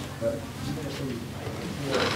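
Faint, low murmuring of a man's voice, a few short hums or syllables over a steady low room hum.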